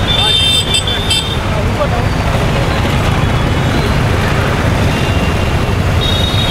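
Steady street traffic noise with a heavy low rumble of engines. A thin, high tone sounds briefly in the first second.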